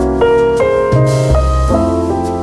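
Background music: piano playing a melody over a bass line, with notes changing about every half second.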